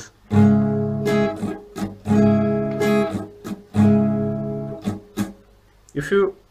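Acoustic guitar strummed slowly on a barre chord in a down-up-mute pattern: three times a down-up strum rings out, then the fretting hand releases its grip so the next strokes are short, dead muted chops.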